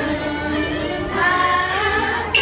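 Cao Dai ritual chanting: several voices sung in long held notes, growing louder about halfway through as the melody steps up.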